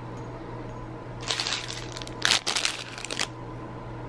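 Rustling and light knocks of a sparkling water can and a wrapped protein bar being handled and set into a leather handbag, in two bouts, about a second in and again from two to three seconds in, over a steady low hum.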